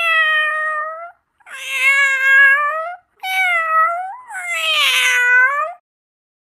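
Domestic cat meowing: a run of long, drawn-out meows one after another, each about a second or more long.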